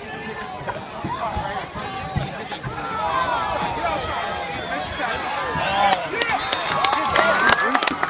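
Football spectators yelling and calling out over each other during a play, the shouting swelling from about three seconds in, with a run of sharp claps near the end.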